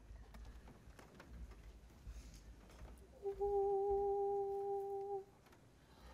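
One steady held note sounds for about two seconds, starting about three seconds in, over faint room noise. It is the starting pitch for a youth choir, which then comes in on the same note.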